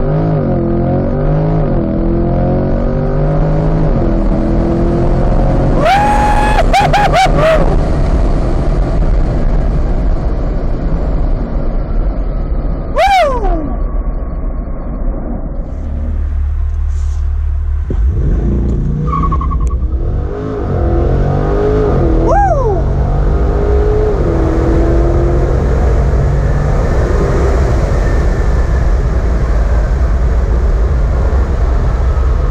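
2020 Chevrolet Corvette C8's 6.2-litre V8 at full throttle, heard from inside the cabin. Its revs climb and drop again and again as the eight-speed dual-clutch gearbox upshifts through the gears toward 100 mph.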